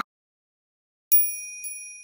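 About a second of silence, then a small high-pitched bell sound effect struck twice in quick succession and left ringing and fading slowly: a chime marking the break between stories.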